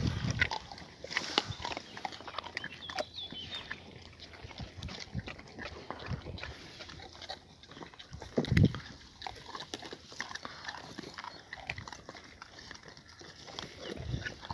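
Dogs eating raw wild boar meat and bones, with many short cracks and clicks of chewing. A loud low thump about eight and a half seconds in.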